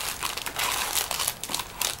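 Plastic snack-bar wrappers crinkling as they are handled and rummaged through, a dense run of crackles and sharp clicks.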